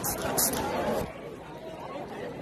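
Indistinct chatter of a crowd of teenagers talking, with no clear words, plus a couple of short hissy rustles in the first half second.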